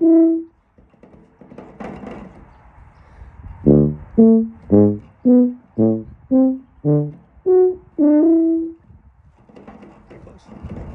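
E-flat tuba playing short, separated notes. A note ends just at the start, a breath is drawn in, then about ten detached notes follow at roughly two a second, hopping between lower and higher pitches, the last one held a little longer.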